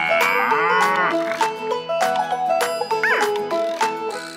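A cow mooing, a cartoon sound effect for an animated dairy cow, with a rising-and-falling moo in the first second and a short sliding call about three seconds in. Bright children's backing music plays under it.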